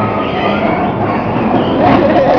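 Bowling balls rumbling down the lanes of a busy bowling alley, with a clatter of pins near the end.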